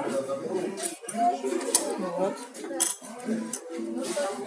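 Small plastic puzzle pieces clicking and clattering as they are handled and laid out on a tabletop, with a few sharp clicks.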